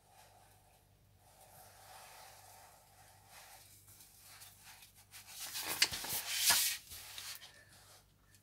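Magazine paper sliding and rustling under a hand as the pages are pushed along and turned, a few seconds of scraping rustle starting a little past halfway.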